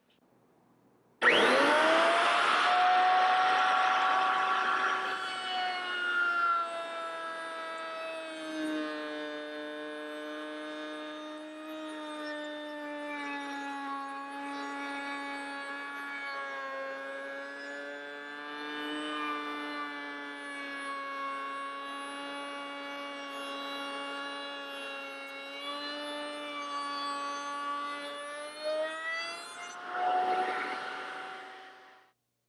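Table-mounted router switched on about a second in, its motor whining up to speed. The pitch then drops and wavers as a cope-and-pattern bit cuts the profile along the edge of an arched rail fed against a starting pin, and rises again near the end as the load comes off.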